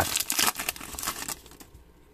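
Crinkling and rustling of a trading-card pack's foil wrapper and loose cards being handled, dense for about a second and a half and then dying down.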